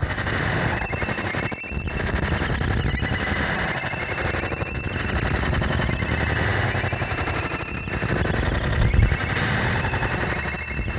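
iPad synthesizer run through a Small Sound/Big Sound Year 2525 fuzz pedal and out a bass speaker cabinet: a harsh, dense, distorted noise texture. The pedal's oscillator frequency is turned by hand partway through, and there is a loud low thump near the end.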